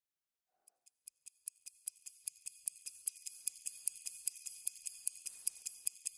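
Close-up ticking of a watch, about five sharp ticks a second, starting under a second in, with a faint hiss building underneath.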